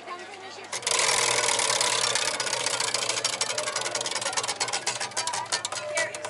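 Prize wheel spun by hand: the pegs on its rim strike the flapper pointer in a rapid run of clicks starting about a second in, the clicks spacing out steadily as the wheel slows down.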